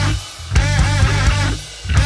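Rock band playing an instrumental passage: distorted electric guitar over electric bass and an acoustic drum kit. The band cuts out briefly twice, in a stop-start rhythm.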